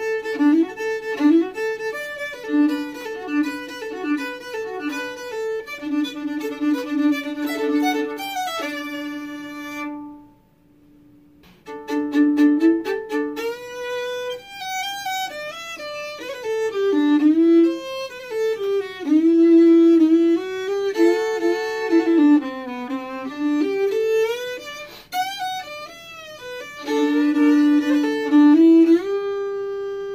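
Unaccompanied fiddle playing a fast country solo line, bowed, often sounding two strings together. About ten seconds in it breaks off, and after a short pause a new solo begins, ending on a long held note.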